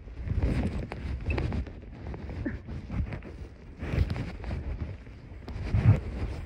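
Wind buffeting the microphone in a low rumble, with irregular soft thumps and rustling as the camera is knocked about.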